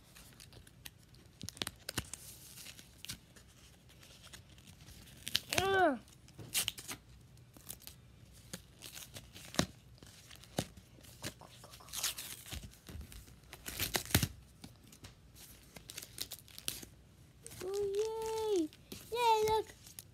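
Plastic and foil packaging of Pokémon card booster packs being torn and crinkled by hand, with scattered sharp crackles and a few short tearing bursts. The packs resist tearing open by hand. A child's voice sounds briefly near the end.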